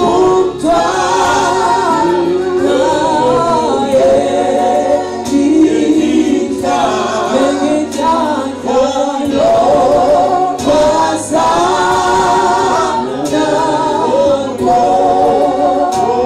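Gospel singing into a microphone: a man's voice leads a hymn in phrases of long held notes with short breaks between them.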